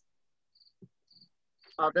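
Faint chirping of a cricket: three short high trills about half a second apart, with a soft tap in between.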